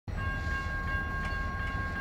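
Freight train led by Canadian Pacific diesel locomotives rolling through, a steady low rumble with two thin, steady high tones held over it and a few faint clicks.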